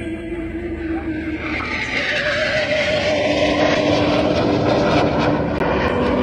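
Jet noise from the Frecce Tricolori's Aermacchi MB-339 jet trainers flying past. It swells about two seconds in and sweeps in pitch as the aircraft go by.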